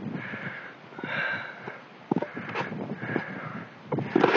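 A person breathing hard, about one breath a second, with a few light clicks in between.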